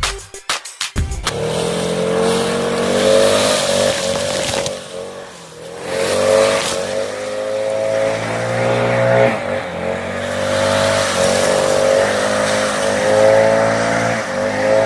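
Stihl BR800X two-stroke backpack leaf blower running at high throttle, its engine pitch wavering up and down, with a brief drop in level about five seconds in. It comes in about a second in, after music.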